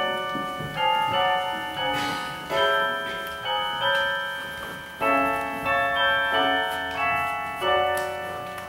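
Slow keyboard music: chords struck about once a second, each dying away before the next.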